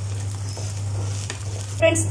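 Vegetable bread chilla sizzling in oil in a non-stick pan, an even frying hiss, with a steady low hum underneath and a few faint scrapes of a wooden spatula.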